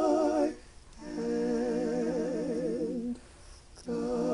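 One woman's voice, multitracked into three-part a cappella gospel harmony, singing held chords without words, each note with a wide vibrato. A chord ends about half a second in, the next is held for about two seconds, and a new chord begins near the end.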